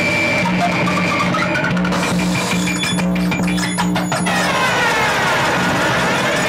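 Electronic synthesizer sounds over a low pulsing drone: a stepped run of rising notes in the first two seconds, a spell of rapid clicks in the middle, then a falling pitch sweep near the end.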